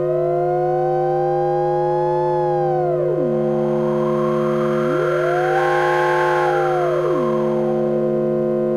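Handmade patch-cable sine-wave synthesizer playing several steady drone tones under a pure tone that glides up, holds, and slides back down, twice. A soft hiss swells in the middle.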